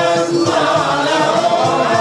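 A chorus singing a qasida, Swahili Islamic devotional song, in maqam Siqa, the voices holding long notes together.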